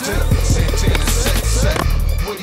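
Hip hop music with a heavy bass line, with skateboard sounds on concrete mixed in.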